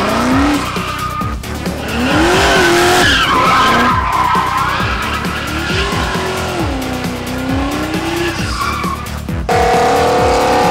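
A Pontiac Firebird's engine revving up and down again and again during a burnout, its rear tyres spinning and squealing, over background music. About nine and a half seconds in, the sound cuts to a different car's engine held at a steady higher pitch.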